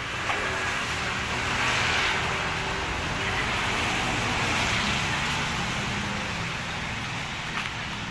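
A motor vehicle passing by: a broad rushing noise that swells about a second and a half in and fades away after about six seconds.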